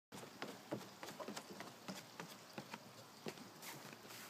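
Faint, irregular soft ticks and rustles of footsteps on grass, a few each second.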